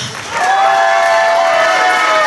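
Audience applauding and cheering, with voices holding a long shout over the clapping.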